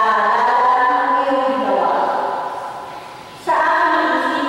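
Church singing by a group of voices, a slow hymn with long held notes. A phrase fades away toward the end, and the singing comes back in suddenly about three and a half seconds in.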